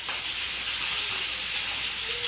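Steady sizzle of food frying in a pan: an even, high hiss that holds without change.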